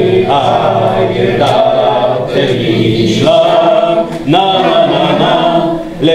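A roomful of people singing a song together without accompaniment, in long held notes.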